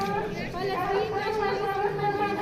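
A woman speaking into a microphone in a high, drawn-out voice.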